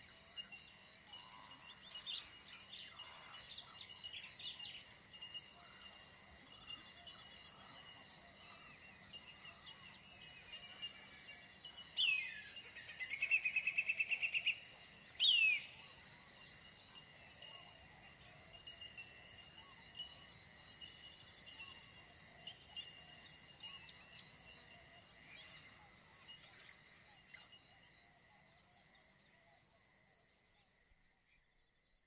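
A steady, shrill chorus of insects as a nature ambience. About halfway through, a bird calls: a falling swoop, then a rapid trill of even pulses, then one short call.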